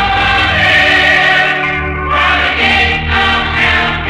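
A choir singing a gospel song in sustained, full chords. The old broadcast tape recording sounds dull, with no highs.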